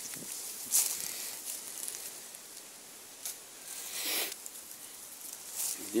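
An Alcatel 3088 feature phone is dropped onto dry leaves and dirt and lands with a short, sharp rustling hit about a second in. A second brief rustle of leaves and grass comes a few seconds later, as the phone is picked back up.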